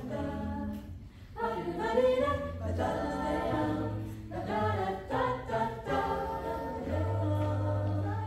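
Mixed a cappella jazz choir singing close harmony over a low sung bass line, with a brief break about a second in.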